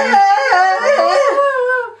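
A poodle howling, a high, wavering pitch that drops away near the end.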